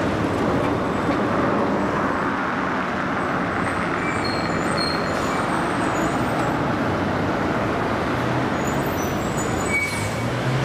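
Steady city street traffic noise, a continuous wash of passing vehicles, with a few brief faint high-pitched tones over it.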